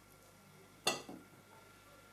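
Quiet room tone broken once, a little under a second in, by a single sharp knock with a short ringing tail and a softer second tap just after.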